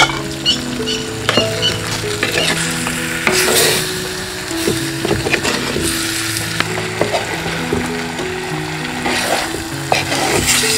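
Chicken curry sizzling in a clay pot as it is stirred with a wooden spoon, with scattered knocks and scrapes against the pot, under background music.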